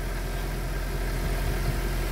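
Volkswagen Golf 8 R's 2.0-litre turbocharged four-cylinder engine idling steadily.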